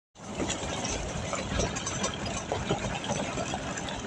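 A safari 4x4 driving on a gravel road: the engine runs steadily under the crunch of tyres on loose gravel and a busy rattle from the vehicle's body.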